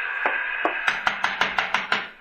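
Radio-drama musical bridge holding its last chord, with a quick even run of sharp knocks in its second half before it cuts off.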